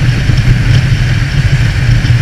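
Honda CB650F inline-four engine running steadily while cruising at highway speed on its stock exhaust, with a continuous rush of wind and road noise.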